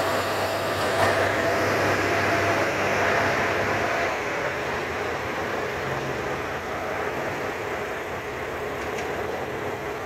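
JR Shikoku 2700 series diesel multiple unit running past on the rails, its engine and wheel noise slowly fading.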